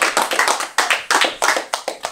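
Several people clapping their hands in an irregular patter of sharp claps, thinning out near the end.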